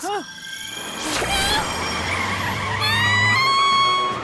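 Cartoon vehicle sound effect of a bus's wheels spinning up: a low rumble from about a second in, with a rising whine that climbs again near the end, over background music.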